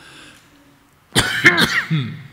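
An elderly man coughing into a podium microphone: a few harsh coughs in quick succession, starting a little over a second in. He puts it down to a voice worn out by too much talking.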